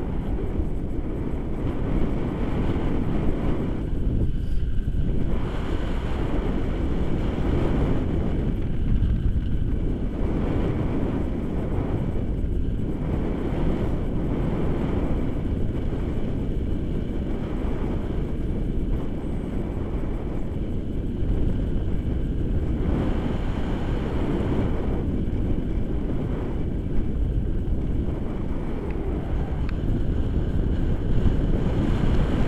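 Wind rushing over the microphone of a paraglider in flight, a loud low rumble that swells and eases every few seconds.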